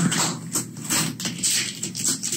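Clear tape being peeled off the flap of a paper mailer envelope in several short, rasping pulls, with the paper rustling.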